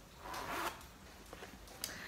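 A cloth zip-top project bag being handled: one short rasp about half a second long near the start, then a couple of faint ticks.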